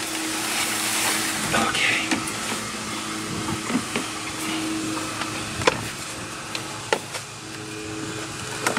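Snap-on lid of a plastic storage tote being pried loose and lifted, with a few sharp plastic clicks late on over a steady hiss.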